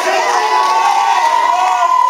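Small crowd of wrestling fans cheering and shouting, with a long drawn-out yell through the second half.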